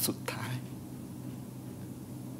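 A tearful man speaking a short phrase in Thai in the first half-second, then a steady low hum.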